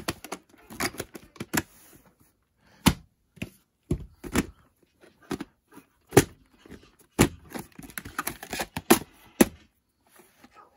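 Plastic clicks and clacks of a VHS clamshell case and videocassette being handled: the case opened and turned, the cassette taken out and set down, about fifteen irregular sharp knocks with short gaps between.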